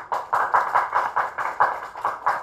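Applause from a small audience: a quick, uneven run of individual hand claps, several a second.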